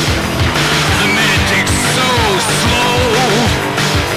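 Loud rock band music with a driving beat of low drum hits. Over it a lead line bends and glides up and down in pitch, in wailing swoops.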